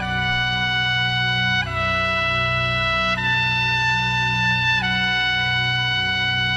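Solo trumpet playing a slow, solemn melody of long held notes, moving to a new note about every one and a half seconds, over a low steady hum.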